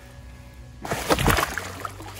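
A large fish slipping off a wet mat into pond water, with a loud splash about a second in that lasts around half a second.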